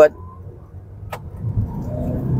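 Cabin sound of a Jetour X70 crossover pulling away under throttle in sport mode: low engine and road rumble, quiet at first, swells about a second and a half in as the car gathers speed, the 8-speed automatic's response a bit delayed. A single short click a little past one second.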